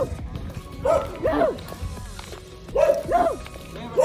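A dog barking in short pairs of barks, one pair about a second in and another near the end.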